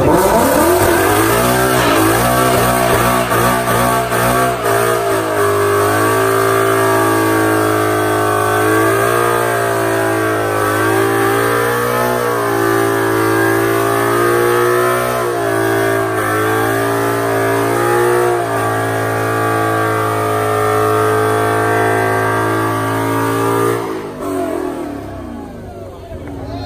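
Ford Mustang's engine held at high revs during a burnout, its rear tyres spinning against the pavement. The revs climb over the first few seconds, hold high with small rises and dips, then fall away about two seconds before the end.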